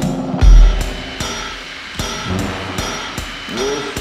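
Instrumental passage of an indie rock song: a drum kit with a loud low bass hit about half a second in, then a quieter, sparser stretch of drums and cymbals. A pitched part enters near the end.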